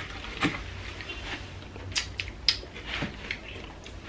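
Eating sounds: metal forks clicking and scraping through whipped cream and donut in a cardboard box, with soft mouth sounds, a few sharp clicks standing out.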